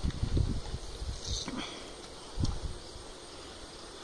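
Hands squeezing a lemon over a plastic strainer: soft handling noises with a brief splash of juice about a second in and a light knock about halfway, over a low wind rumble on the microphone.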